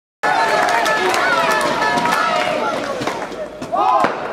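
Crowd cheering and shouting, many voices overlapping, with scattered claps; it dies down after about three seconds, and a single person laughs near the end.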